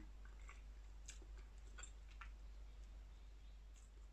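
Near silence: room tone with a low steady hum and a few faint, scattered small clicks.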